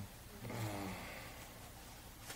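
A man's faint, drawn-out "uh" of hesitation, a little breathy, lasting about a second, followed by quiet room tone.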